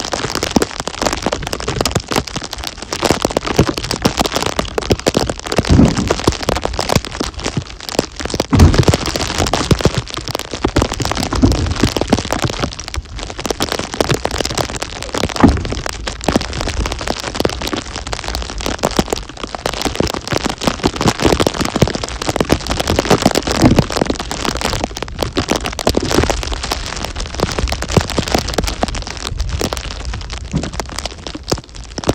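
A dense, crackling patter of falling snow hitting the microphone, with several low, heavy thuds of firewood rounds being set into a pickup's bed.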